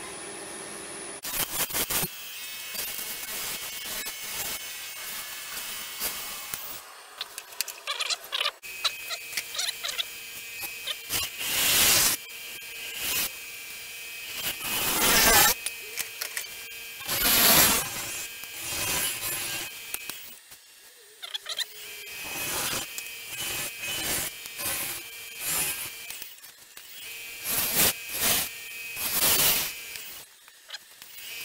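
Bowl gouge cutting a spinning sugar pine bowl blank on a wood lathe: irregular scraping, shearing cuts that come and go over a faint steady machine whine, with a few much louder cuts near the middle.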